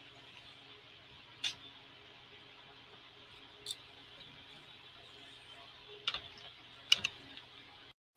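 Faint hum and hiss of an open microphone with a few scattered sharp clicks, one about a second and a half in, one near four seconds and a small cluster around six to seven seconds, the kind made while fiddling with audio jacks and connections during a sound check. The feed cuts off to dead silence at the very end.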